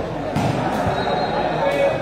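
Sepak takraw ball thudding sharply twice, about a third of a second in and again near the end, over steady crowd chatter in a large hall.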